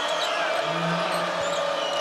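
Steady murmur of a basketball arena crowd during live play, with a basketball being dribbled on the hardwood court.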